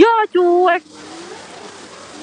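A high-pitched voice calling out two short syllables in the first second, then only a faint steady hum.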